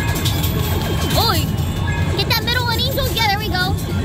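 Arcade din: a steady low rumble of running machines under game music and electronic sound effects, with a fast warbling run of tones from about two seconds in.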